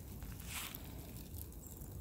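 Burning reclining loveseat fire crackling faintly, with a short hiss about half a second in, over a steady low rumble.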